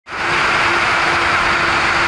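Steady motor-vehicle noise from motorway traffic and a running engine, an even rush with a constant hum.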